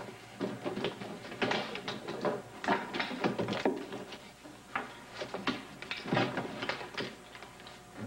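Irregular knocks, taps and clatter, several a second, like objects being handled and knocked against in a room.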